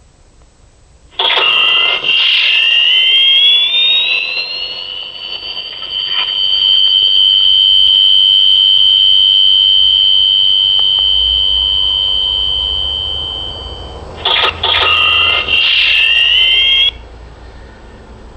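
A loud, high-pitched whistle of several tones that starts suddenly, glides upward for a few seconds and then holds steady. Near the end it sputters, rises again and cuts off suddenly.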